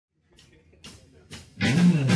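Three faint clicks about half a second apart, like a count-in, then a live blues-rock band of electric guitar, bass guitar and drum kit comes in loud about one and a half seconds in.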